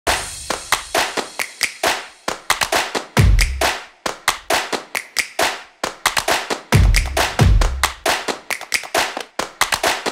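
Percussive intro music: rapid sharp clap- or tap-like hits, several a second, with deep bass notes coming in about three seconds in and again near seven seconds.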